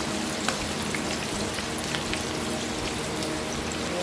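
A pork chop sizzling steadily as it shallow-fries in hot oil in a pan. There is a single light click about half a second in.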